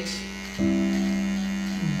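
Electric hair clippers running with a steady buzzing hum while trimming at the side of the head.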